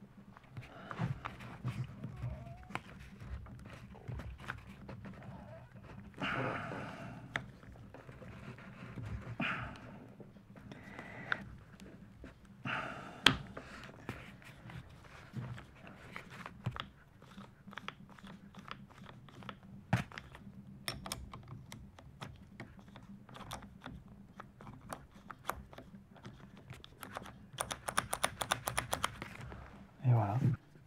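Handling sounds of a Makita HR2400 rotary hammer's SDS chuck being reassembled by hand: its rubber dust cover is worked back onto the chuck, giving irregular clicks and taps with a few short bursts of rubbing and scraping. A quick run of clicks comes near the end.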